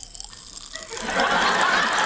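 Pop Rocks candy crackling and popping inside a mouth held right against a microphone: a dense fizzing crackle that starts faintly and grows loud about a second in.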